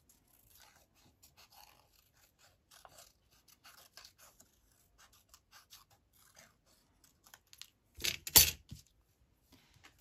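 Small craft scissors making many short snips in paper, fussy-cutting around a printed leaf image, with light paper handling. About eight seconds in comes a louder, brief clatter as the scissors are set down on the table.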